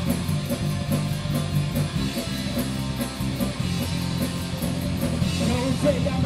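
Live rock band playing: electric guitars, bass guitar and drum kit together, with cymbals keeping a steady fast beat.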